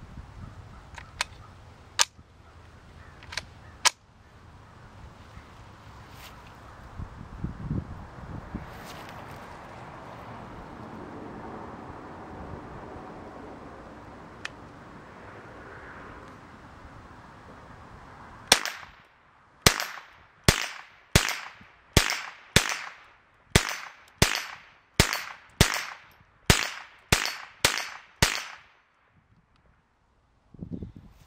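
Marlin Model 60 semi-automatic .22 LR rifle firing a string of about fourteen shots in quick succession, about one and a half a second, each sharp crack trailing off in a short echo. A few light clicks come well before the shooting starts.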